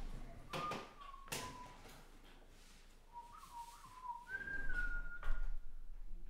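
A person whistling a few short, wavering notes of a tune, the last one held higher. A few sharp taps or knocks fall in between, about half a second in, just over a second in, and near the end.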